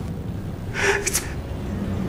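A man takes a quick breath and starts a word ('It's'), ending in a sharp hiss, over a steady low rumble.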